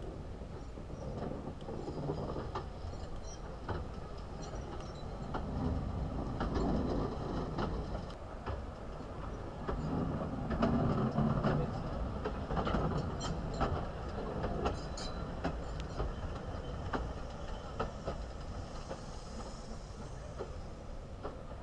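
Narrow-gauge steam train, the locomotive Palmerston with its coach, rolling slowly past at close range: a low rumble that swells twice as it goes by, with many irregular clicks and clanks from the wheels and rail joints.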